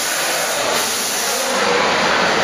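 A steady, even hiss of background noise.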